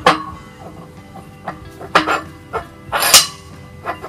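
Steel pins and spacer bosses knocking and clinking against each other and the bucket ears as they are slid into place: a few sharp metal knocks, the loudest about three seconds in, over soft background music.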